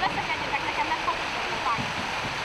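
A steady rush of water with the chatter of many children's voices over it, and paddles splashing as a canoe is paddled.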